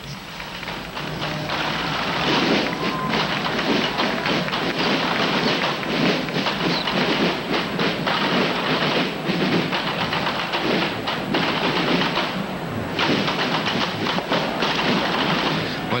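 Massed traditional French drums playing together in a street parade: a dense, continuous stream of drum strokes with crowd noise mixed in, thinning briefly near the end.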